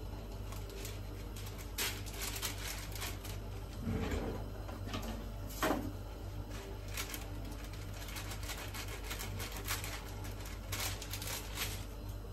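A sheet of paper rustling and a kitchen drawer being opened, with scattered light clicks and a soft knock about four seconds in, over a low steady hum.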